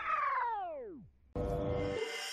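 Comedic cartoon sound effect: a single pitched sound slides steadily downward for about a second, like a sad, deflating whine. After a brief gap, a steady musical tone from the background music comes in.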